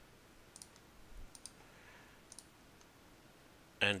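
Faint computer mouse clicks, a handful spread over the first three seconds, as vertices of a line are placed in a CAD program.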